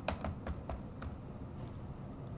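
Computer keyboard keystrokes: a quick run of about six clicks in the first second as a short word is typed, then only faint background hiss.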